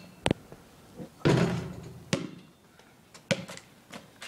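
A basketball bouncing on a concrete driveway: sharp knocks about a second apart, with one louder bang about a second in that rings on briefly.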